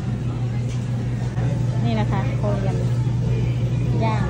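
Busy restaurant room: a steady low hum runs under the room noise, with diners' voices in the background about halfway through.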